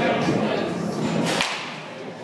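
A baseball bat striking a pitched ball during a swing: one sharp crack about one and a half seconds in.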